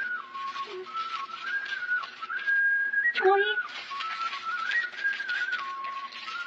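A high, pure-toned melody of long held notes, stepping up and down between a few pitches, over a steady crackly hiss. A brief voice cuts in about three seconds in.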